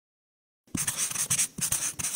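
Pen or marker scratching in quick strokes, as in writing, starting about three-quarters of a second in and coming in two runs with a short break between.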